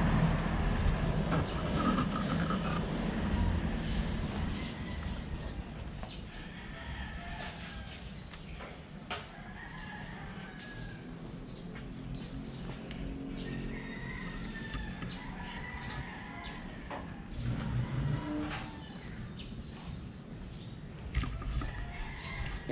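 Birds chirping and calling in the background, with a few faint knocks.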